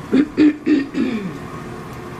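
A woman clearing her throat in four short bursts close together in the first second or so.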